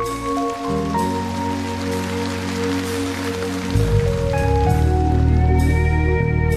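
Live band music between songs: sustained keyboard chords with a hissing wash of noise over them for about three seconds, then a deep bass comes in about four seconds in and the music grows louder.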